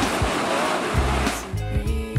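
Rushing whitewater of a river rapid over background music with a bass beat; the water noise drops away about one and a half seconds in, leaving the music.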